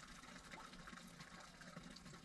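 Near silence with a faint, steady trickle of running water, typical of a stone memorial drinking fountain (česma).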